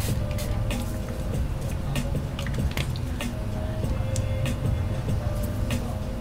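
Airbrush compressor running with a steady hum, while the airbrush gives many short hissing bursts of air as it sprays alcohol ink.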